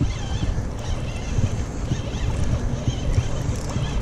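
Spinning reel being cranked against a hooked fish, under a steady rushing noise of river water and wind on the microphone.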